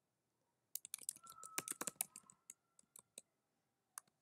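Typing on a computer keyboard: a quick run of key clicks starting about a second in, thinning out to a few scattered keystrokes.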